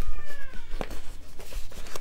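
A cat meowing once, a short high call that falls in pitch over about half a second, followed by a few light clicks and rustles of handling.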